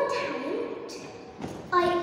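Speech over a stage PA in a large hall, with drawn-out, lilting words; it dips briefly about a second and a half in, then the voice comes back loudly.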